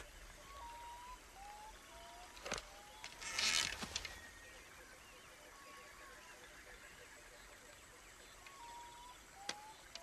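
Faint jungle ambience from a film soundtrack: scattered short whistled bird calls, a sharp click a couple of seconds in, and a brief rustling hiss about a second later.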